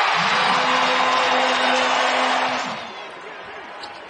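Arena basketball crowd cheering loudly for about three seconds, dying down near the end, with a steady held tone sounding over the cheer for most of it.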